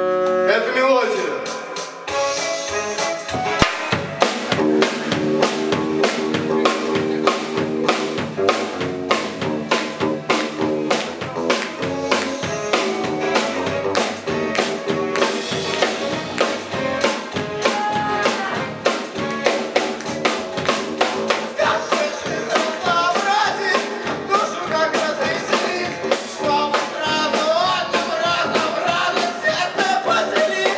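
Live band music: a held chord ends in a falling glide in the first couple of seconds, then a drum kit comes in with a steady fast beat under electric guitar and keyboard. A wavering melody line rises above the band past the middle.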